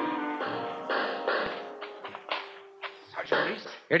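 An orchestral music bridge ends in the first half second, then a string of irregular bangs follows: radio-drama battle sound effects of gunfire, growing fainter over the following seconds.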